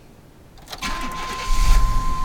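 1999 GMC Suburban cold-started: the starter cranks briefly, and the engine catches about a second and a half in and keeps running. A steady high tone comes in with the cranking and carries on.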